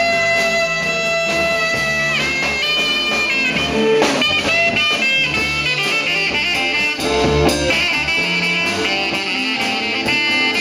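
Live blues-rock band playing an instrumental passage: a saxophone leads with long held notes and slides over electric guitar, bass guitar and drums.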